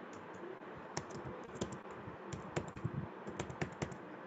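Typing on a computer keyboard: keys clicking in short, irregular runs.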